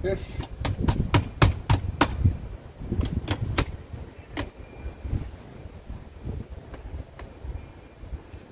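Cordless drill/driver driving a screw to mount an outdoor motion sensor on a wooden wall: a quick run of sharp clicks in the first two seconds, three more about three seconds in, one more shortly after, then a few faint ones.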